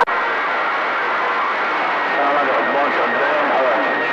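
CB radio receiver hiss after a transmission ends, with a thin steady whistle through the static. Weak, distant voices come faintly through the noise about halfway in and near the end.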